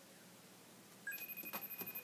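FaceTime call ringing out on an iMac: a quiet, high electronic ring tone with light clicks starts about a second in.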